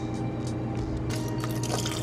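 Apple cider vinegar poured straight from the bottle into a blender jar onto raw cashews: a thin liquid trickle and splash.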